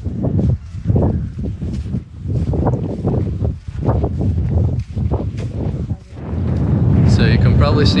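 Wind buffeting the camera microphone in gusts while a person walks on dune sand in flip-flops, steps about twice a second. About six seconds in the wind rumble grows louder and holds steady.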